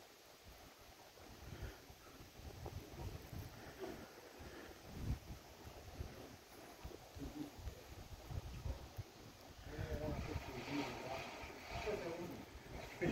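Quiet outdoor ambience: an uneven low rumble of wind on the microphone, with faint voices coming in near the end.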